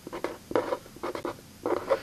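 Felt-tip pen writing on paper: a run of short separate pen strokes as a word is written out.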